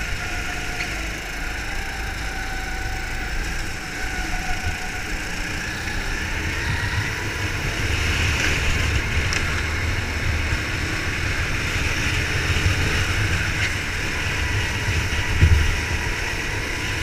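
Go-kart engine heard onboard, its note dropping off for a corner and then rising again as it accelerates, over a steady low rumble. There is a short thump near the end.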